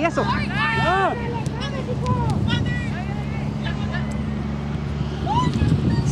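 Shouting voices of players and spectators at an outdoor youth soccer game, loudest in the first second, then scattered fainter calls, over a steady low hum.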